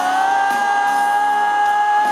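Live rock band playing, with one long high note that slides up into pitch at the start and is held for about three seconds over the band.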